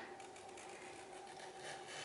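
Felt-tip marker drawing a line on paper: the faint rub of the tip across the sheet.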